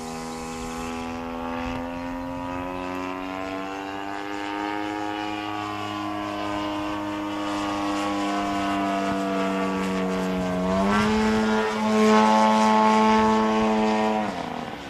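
RCGF 55 two-stroke gasoline engine and propeller of a giant-scale RC aerobatic plane in flight, a steady buzzing drone. Its pitch creeps up over the first several seconds, gets louder with a quick step up in pitch about three-quarters of the way through, then drops sharply at the very end.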